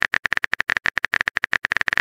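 Rapid, irregular clicking of a phone-keyboard typing sound effect, about ten clicks a second.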